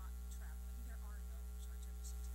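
Steady low electrical mains hum in the sound system, with a woman's voice faint beneath it.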